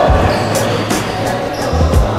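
Background music with a heavy bass beat, over a basketball bouncing on a gym floor.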